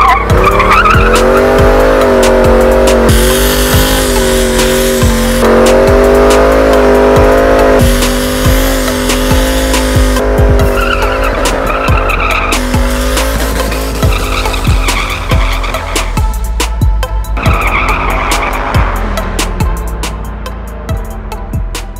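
Ford Mustang V8 revved up in the first second and held high and wavering through a burnout, with the rear tyres squealing as they spin. The revs fall away near the end. Music plays over it.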